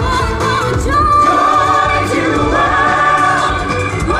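Choir singing an upbeat pop song over instrumental backing, holding long sustained notes through the middle.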